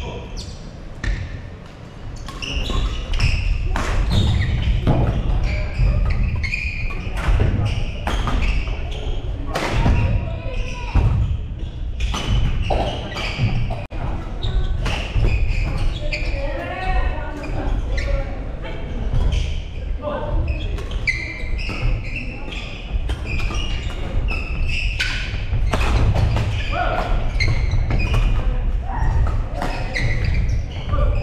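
Badminton play in a large gymnasium: rackets strike shuttlecocks with sharp, irregular cracks and feet thud on the wooden floor, mixed with players' voices in the hall.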